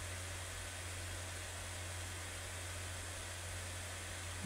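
Steady hiss with a constant low hum underneath: the recording's background noise, with no distinct sound event.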